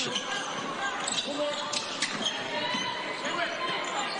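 A basketball bouncing on a hardwood court during live play, with sneakers squeaking and arena crowd noise around it.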